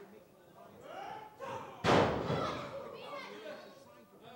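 A wrestler's body slamming onto the wrestling ring's mat once, about two seconds in, the loudest sound here, with a short ring-out after it. Spectators' voices, children's among them, go on around it.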